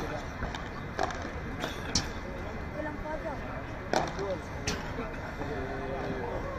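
Padel ball being struck by the players' rackets and bouncing during a rally: sharp pops about a second apart, the loudest near two and four seconds in.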